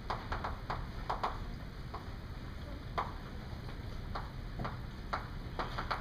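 Chalk writing on a blackboard: a string of short, irregular taps and clicks as the letters are formed, over a steady low room hum.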